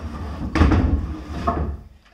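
Metal-framed chair being moved and set down on a hardwood floor: a loud knock about half a second in, a low rumble as it shifts, and a second knock about a second later.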